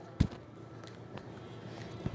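A soft thump just after the start, then a few faint taps: hands touching the shoulders and landing back on a rubber gym floor during plank shoulder taps.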